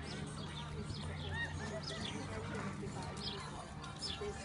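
A horse cantering on a sand arena, its hoofbeats mixed with birds chirping repeatedly and a steady low hum.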